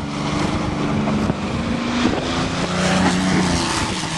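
Van engine running hard under acceleration, its pitch wavering and stepping, over a steady rush of noise.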